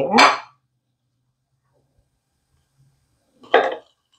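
Near silence after a last spoken word, broken near the end by one short sound.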